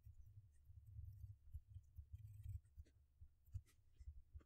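Faint, irregular clicks of typing on a computer keyboard, over a low steady hum.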